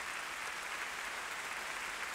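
A large audience applauding steadily, a dense even patter of many hands clapping.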